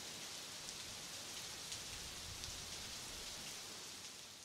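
Faint, steady rain-like hiss with no tones in it, broken by a few faint ticks.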